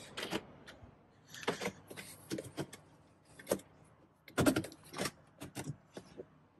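A scatter of short clicks and knocks from reaching into a BMW E90's cabin and working the controls to switch the ignition on, the start/stop button being pressed near the end. The loudest knocks come about four and a half seconds in.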